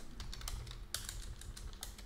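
Typing on a computer keyboard: a quick, irregular run of keystrokes as a line of code is edited.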